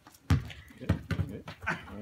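A basketball coming down and bouncing, a few dull thuds, the loudest about a third of a second in, as a Pembroke Welsh Corgi chases it.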